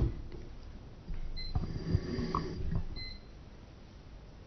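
Quiet hall noise: a sharp click at the start, then a second or two of soft knocks and rustling, with a faint high beep twice.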